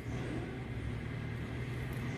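A steady low background hum with no distinct strokes.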